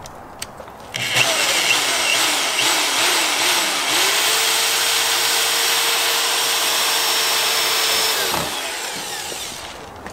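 Corded electric drill spinning a self-tapping screw into a spoiler on a car's trunk lid. It starts about a second in with its speed rising and falling, settles into one steady whine, then winds down near the end.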